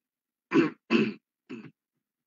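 A person clearing their throat in three short bursts about a second in, the first two loud and the last one weaker.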